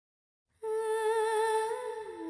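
Wordless female vocal humming one long, slightly wavering note at the start of a song, coming in about half a second in and sliding up a little near the end.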